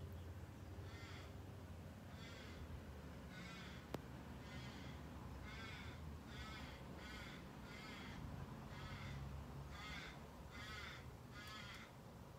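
Crows cawing, a run of about a dozen calls at roughly one a second, over a faint steady low hum, with a single sharp click about four seconds in.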